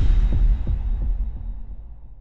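Intro sound effect: a deep bass boom with a few short low pulses in its first second, then a slow fade.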